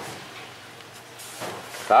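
Low steady workshop background noise in a pause between words, with a brief faint rustle a little past the middle. A man's voice starts again at the very end.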